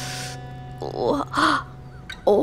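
A woman's breath at the start, then a short pained vocal sound about a second in, over background music holding steady low notes.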